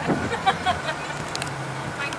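Mixed background sound of people talking over a low steady hum, with a few short knocks about half a second in.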